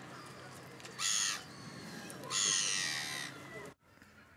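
A bird calling twice with harsh, caw-like calls: a short one about a second in and a longer one about two seconds in, over steady background noise that cuts off suddenly just before the end.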